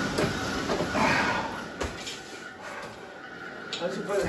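Vasa swim trainer's fan flywheel whooshing with each arm pull, two strokes about a second apart, then dying away as the pulling stops. A single sharp knock near the middle.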